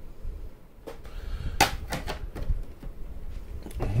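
Hard plastic graded-card slabs being handled and swapped: a few sharp clicks and knocks, the sharpest about one and a half seconds in.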